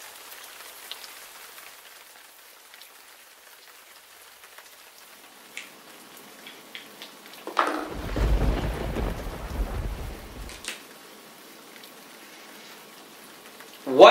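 Steady rain with a clap of thunder about seven and a half seconds in that rolls on as a deep rumble for about three seconds.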